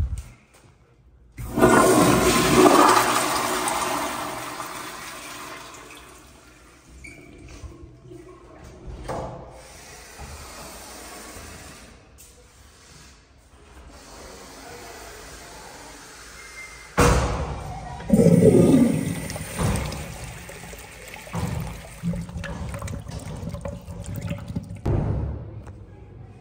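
Commercial wall-hung toilet with a flushometer valve flushing: a sudden loud rush of water that fades away over a few seconds. Another loud flush follows about seventeen seconds in.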